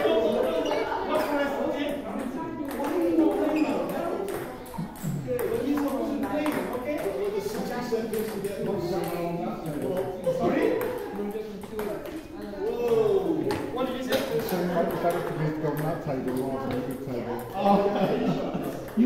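Table tennis balls being rallied, many light clicks of ball on bat and table scattered irregularly, under steady chatter of several people's voices.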